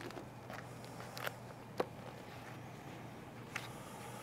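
Quiet room with a steady low hum and a few faint, brief clicks and rustles as a hardback book is picked up and opened. The sharpest click comes just under two seconds in.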